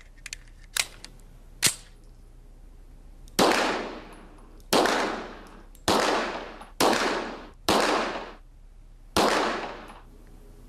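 Six shots from a Colt 1911 pistol chambered in 9 mm, fired at an uneven pace about a second apart, each ringing out and fading over most of a second in the range hall. Two light, sharp clicks come before the first shot.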